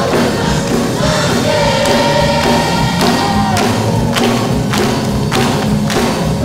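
Youth choir singing with instrumental accompaniment. From about three and a half seconds in, a steady beat of hand claps joins, roughly one every half second.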